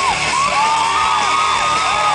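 Live rock band playing in a concert hall, with long held, bending sung notes over the band and the crowd cheering, picked up from among the audience on a small photo camera's microphone.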